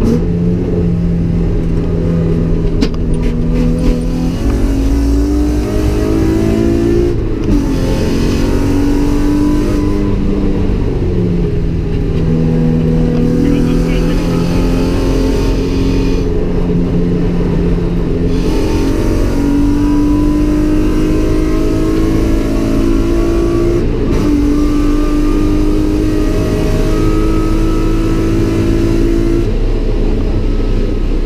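GM LFX V6 engine in a swapped Mazda MX-5, heard from inside the cabin under hard driving: its pitch climbs with the revs and drops back at each gear change, several times over, with stretches of steadier running between.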